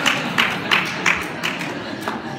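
An audience laughing at a joke's punchline, with sharp claps from a few people mixed in; it fades near the end.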